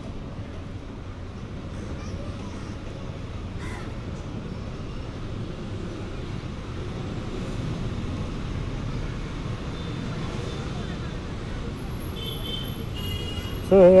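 Steady low background rumble picked up by the microphone, with a brief, faint harsh call about four seconds in.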